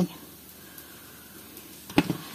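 Faint steady sizzle of fritters frying in a pan, then one sharp knock near the end as a bell pepper is set down in a plastic basket.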